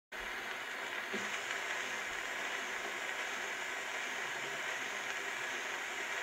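Surface noise of an old acoustic-era disc record playing on a cabinet phonograph: a steady hiss as the needle runs in the lead-in groove.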